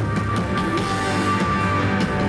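Live band music with electric guitar and drum kit playing steadily.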